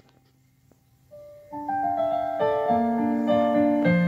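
Digital piano beginning to play: a soft first note about a second in, then sustained chords from about a second and a half, quickly growing louder.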